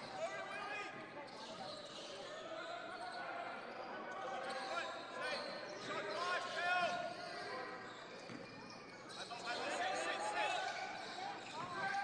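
Court sound of a basketball game: a ball dribbled on a hardwood floor, sneakers squeaking in short bursts, and scattered voices of players and a small crowd.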